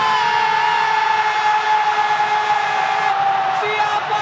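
Football commentator's long held goal cry: one sustained shouted note that rises at the start, then holds and sags slightly in pitch for about three and a half seconds, over steady crowd noise.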